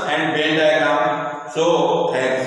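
A voice chanting in a steady recitation, holding long notes, with a short break about one and a half seconds in.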